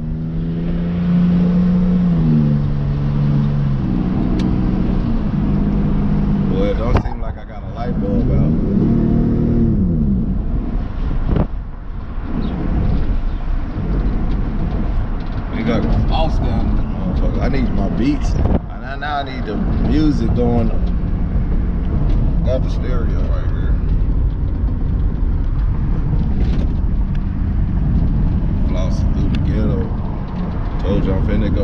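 Inside a moving car: a steady engine and road rumble, with a voice and held melodic pitches over it, in the manner of rap music playing through the car's stereo.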